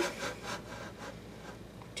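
Faint rubbing and scraping handling noise, with a few light knocks.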